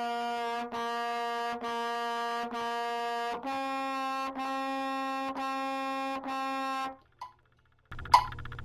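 Trumpet playing eight tongued quarter notes at a steady beat, each just under a second long: four on written C, then four a step higher on written D.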